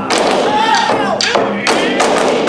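Large barrel taiko drums struck hard with wooden bachi: several heavy strikes, one at the start and a cluster in the second half. Between them a long, high call falls in pitch.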